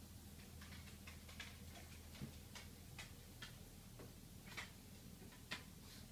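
Faint, irregular taps of slow footsteps on a hardwood floor over a low steady room hum.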